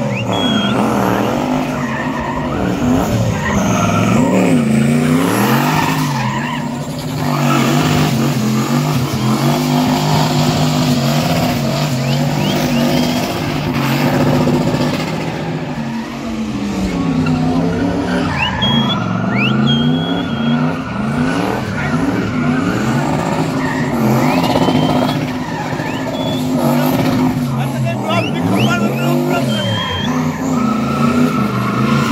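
A car engine revving hard and repeatedly, its pitch swinging up and down, as the car spins its rear tyres in a burnout and drift. The tyres screech and skid throughout.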